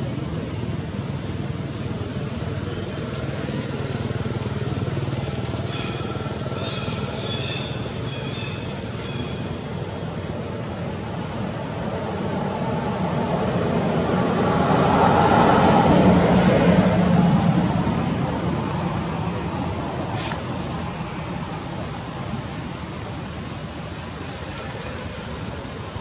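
Steady outdoor background noise with a road vehicle passing, swelling and then fading, loudest a little past the middle. A few faint, brief high calls come about a quarter of the way in, and there is a single sharp click near the end.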